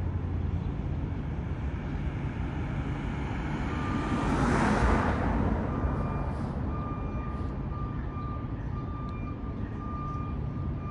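Street traffic: a steady low rumble, with a vehicle passing close about four to five seconds in, rising and then fading. After it, a thin high tone comes and goes.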